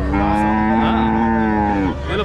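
A cow mooing: one long, loud call of nearly two seconds that drops in pitch as it ends.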